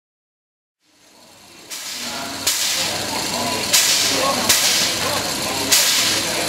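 Steam locomotive 109 109 standing with steam hissing, and sharp puffs of steam about once a second from about two and a half seconds in. The sound fades in about a second in.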